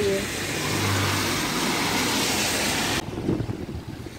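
Road traffic in the rain: a steady spray of car tyres on a wet road, with a passing car's engine hum about a second in. It cuts off abruptly about three seconds in, leaving a much quieter outdoor background.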